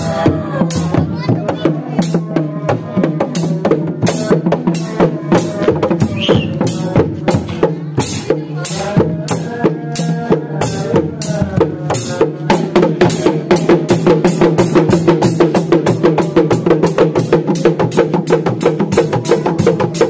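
Sundanese reak ensemble of dogdog hand drums with a small metal cymbal struck with a stick, playing a fast, steady interlocking beat. The beat grows busier and louder about halfway through.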